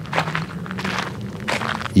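Footsteps crunching on a dry dirt trail, a few steps in a row.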